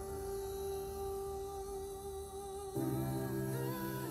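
Soft background music of long held notes, moving to a new, slightly louder chord about three seconds in.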